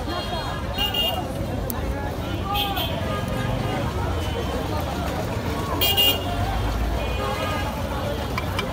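Busy street ambience: a crowd of voices talking over a low traffic rumble, with short vehicle horn toots about a second in, around two and a half seconds, and the loudest near six seconds.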